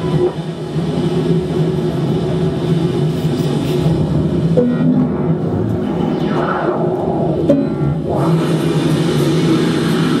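Live electronic music from a pad sampler or drum machine and a laptop: a dense, steady low drone with swells of noise between about six and eight seconds in.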